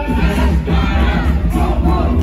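A hip-hop beat with heavy bass plays loudly over a sound system. Voices shout over it: a crowd, and an MC on a microphone.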